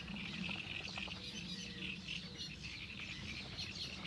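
Birds chirping and calling in quick short notes, many overlapping, over a faint low steady background noise.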